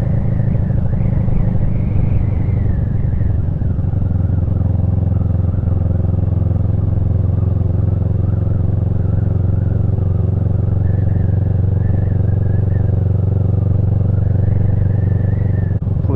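Motorcycle engine running steadily under way at low town speed, a loud, even drone from the rider's own bike.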